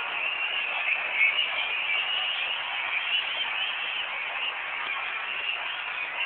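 Large arena crowd cheering and shouting, a dense, steady din of many voices.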